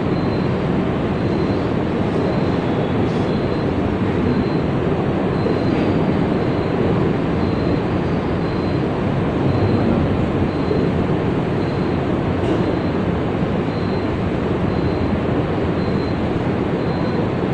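Steady rushing ambience of a large, crowded prayer hall: ceiling fans running and a big seated congregation, with no distinct voices. A faint high tone pulses through it about every 0.7 seconds.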